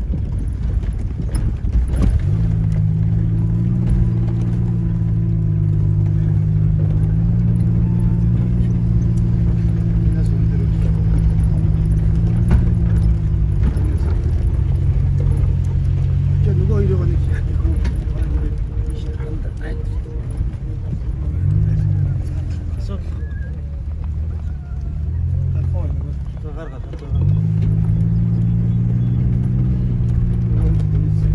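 A vehicle's engine running under way, heard from inside the cabin. Its hum holds steady for stretches and then shifts in pitch several times, rising about sixteen seconds in and jumping up again near the end.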